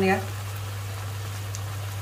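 Seafood, tofu and vegetables sizzling steadily in a frying pan over a gas burner, with a constant low hum underneath.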